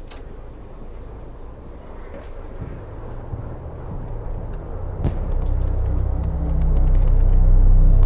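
A low droning rumble that swells steadily over several seconds until it is loud, with a sharp click about five seconds in.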